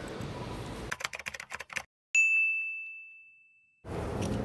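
Edited-in typewriter sound effect: a quick run of key clicks, a brief silence, then a single bright bell ding that rings out and fades over about a second and a half.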